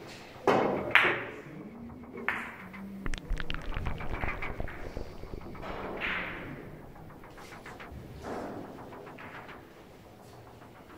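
A Russian billiards shot: the cue tip strikes the cue ball about half a second in, and a sharp ball-on-ball click follows about half a second later. Rolling balls knock again shortly after, then give a quick run of small clicks over a second or so.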